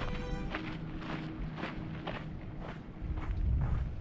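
Background music playing, with footsteps on a dirt trail at about two steps a second.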